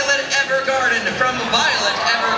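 A man speaking into a microphone over a hall's PA system.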